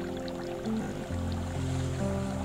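Slow, soft piano music of long held notes, over a light trickle of water splashing from bamboo fountain spouts into a basin.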